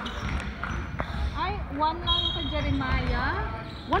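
A basketball bouncing on a sports-hall floor during a game, with repeated low thuds. From about a second and a half in, gliding squeaks and voices call out over it.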